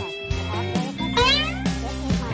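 Background music with plucked guitar. About a second in, a single short animal call rises in pitch over it.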